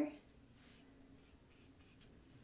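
Faint, soft scratching of a paintbrush being stroked with acrylic paint across a canvas.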